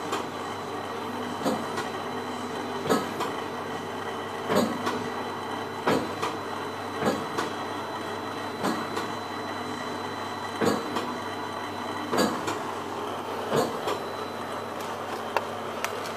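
Shinohara 52 sheetfed offset printing press running: a steady machine hum with a sharp clack about every second and a half.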